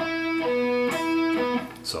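Electric guitar playing four alternate-picked single notes, E on the ninth fret of the G string alternating with B on the ninth fret of the D string, two times each. Each note rings briefly and separately before the next.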